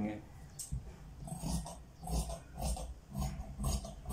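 Tailor's shears cutting through cotton lining fabric along chalked lines, in short crunching snips about two a second, each with a light knock of the blade on the table.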